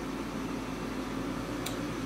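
Steady hum and hiss of a saltwater reef aquarium's equipment running: the pumps and powerheads that keep the water moving. A faint click comes near the end.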